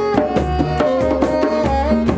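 Improvised music: djembe hand drums struck in a quick, steady pattern under a saxophone playing a slow melody of held notes that step between pitches.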